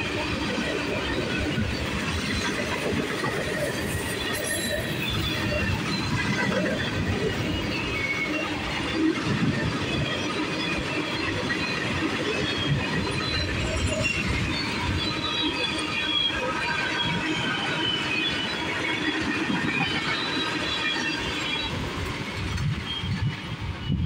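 CSX freight train of tank cars and boxcars rolling past close by: a steady rumble of wheels on rail, with short high-pitched wheel squeals coming and going throughout.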